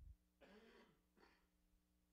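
A man faintly clearing his throat, once about half a second in and again briefly a little after a second.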